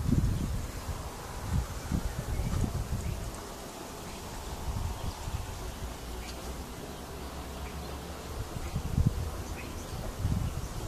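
Outdoor ambience with irregular low rumbling of wind buffeting the microphone, over a faint steady hiss.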